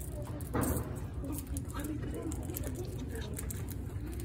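Faint voices in the background of a room over a steady low hum, with a short rustle about half a second in.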